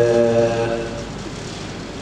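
A man's voice through the hall's sound system, drawing out a level hesitation sound for under a second, then a pause with only steady hall noise.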